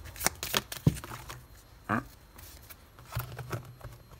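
Heart-shaped oracle cards being shuffled and handled by hand: a quick run of crisp clicks in the first second, then a few more a little after three seconds in.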